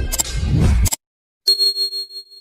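Background music cuts off about a second in. After a short silence comes a bright bell-like 'ding' sound effect with a sharp attack and a ringing tail that fades, the notification chime of a subscribe-button animation.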